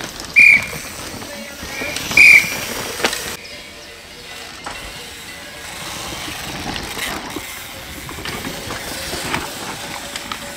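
Downhill mountain bikes riding through loose dirt corners, tyres rolling and scrabbling over the ground, with two short, loud, high-pitched squeals, the first about half a second in and the louder one about two seconds in.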